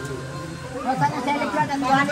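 Voices chattering, words not made out, over a steady low tone.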